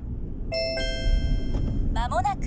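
Two-note electronic chime from the car's navigation unit, ringing out for about a second, over the steady low rumble of the car on the road.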